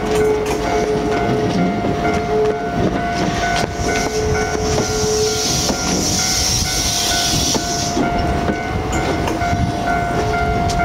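E657 series train cars rolling slowly past on the rails, their wheels clicking over rail joints. A steady high-pitched tone runs throughout, and a lower tone comes and goes.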